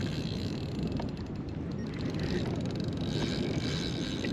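Steady wind and water noise around a kayak, with a few faint ticks.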